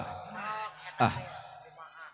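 A man's voice through a PA system: a short, sharp exclamation "Ah" from a wayang golek puppeteer speaking as a character. It is preceded by a fainter pitched vocal sound and fades away afterwards.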